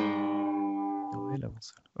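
Acoustic guitar chord struck once and left ringing for about a second and a half. It is in an open tuning with the low E string lowered to D and the A string lowered to G, so two open bass strings sound under the chord.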